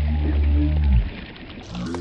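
A man's low, drawn-out exclamation lasting about a second, falling in pitch as it ends, as a snakehead strikes the lure, over water splashing at the surface.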